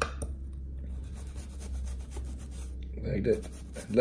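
Kitchen knife cutting through an onion on a cutting board: a quick run of small clicks and rasping scrapes.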